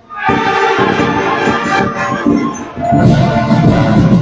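Student marching band playing: brass chords and drums come in about a quarter second in after a brief hush, and the music grows louder about three seconds in.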